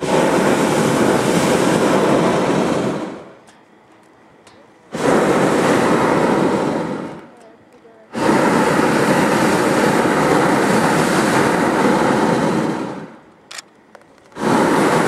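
Hot-air balloon's propane burner firing in three long blasts, each starting abruptly: about three seconds, then about two, then about five.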